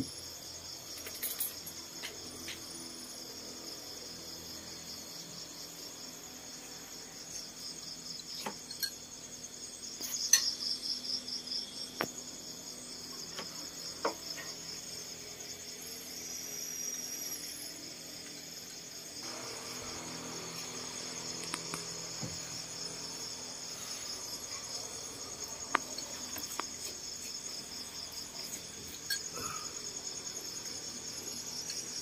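Night insects chirring steadily in a high, finely pulsing band, with a few sharp clicks and knocks scattered through, the loudest about ten seconds in.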